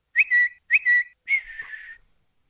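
Whistling, three high notes: two short ones about half a second apart, then a longer one that dips slightly in pitch.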